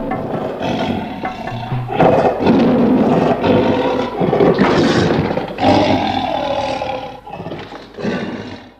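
Lion roaring, a sound effect of long, rough roars. It grows loudest about two seconds in and dies away near the end.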